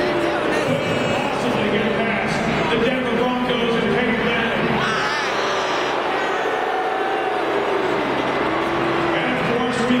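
Large stadium crowd, a steady dense din of many voices talking and calling at once, with no single voice standing out.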